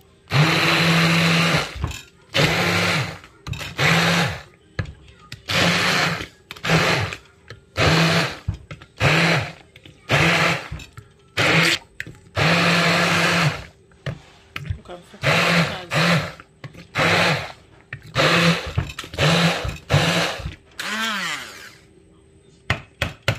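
Hand-held immersion (stick) blender switched on and off in many short bursts, about one a second, puréeing spices, herbs and red onion into a paste in a plate. Near the end the motor's pitch sweeps as it spins down and up again.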